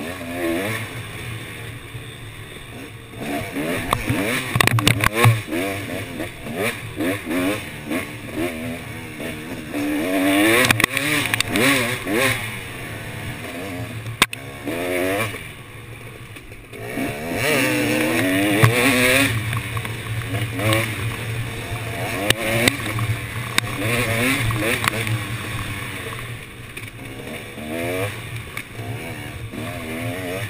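Off-road KTM dirt bike engine heard from the rider's helmet, revving up and down over and over as the throttle is worked along a tight, twisting trail, with a few sharp knocks from the bike over bumps.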